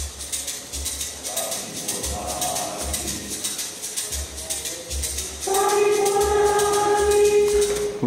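Looped backing track played back over the hall's loudspeakers: a steady shaker rhythm over a pulsing bass, with faint recorded group singing. About five and a half seconds in a loud held note comes in.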